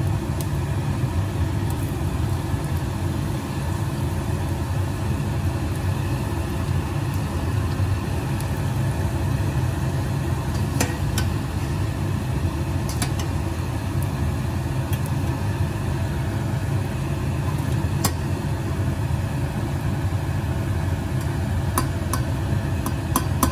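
A poori deep-frying in hot oil in a steel saucepan, over a loud, steady low hum. A few light clicks come from the slotted spoon against the pan as the poori is turned.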